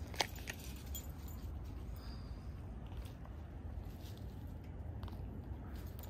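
Quiet outdoor ambience at night: a steady low rumble with faint hiss, and two light clicks just after the start.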